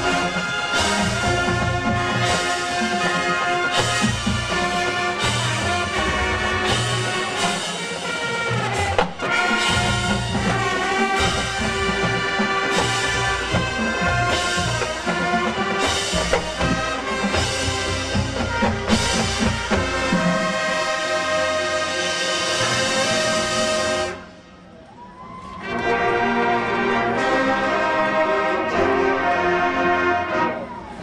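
Marching band playing at full volume, brass over a drumline of snares, tenors and bass drums. Near the end the full band drops out for about a second and a half, leaving a soft passage, then comes back in.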